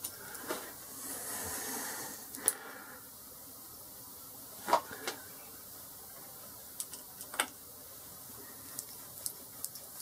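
Allen key tightening the cap screws that hold the cross-slide nut on a Boxford lathe: a few light, scattered metallic clicks and taps, with a short soft scrape about a second in.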